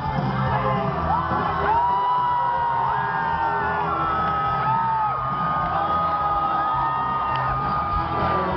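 Live punk rock band playing through a PA, with a large crowd whooping and shouting along in long held calls.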